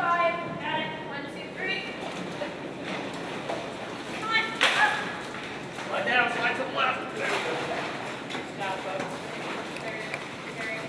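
Indistinct voices of several people calling out to one another over steady background noise, with one brief sharp noise about halfway through.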